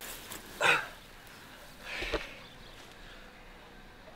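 Two short, breathy bursts of breath from a person, like snorts: a loud one just under a second in and a weaker one about two seconds in, over a low steady outdoor background.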